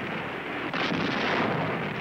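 Sustained battle gunfire, a dense rattle of shots and blasts, a little louder about a second in.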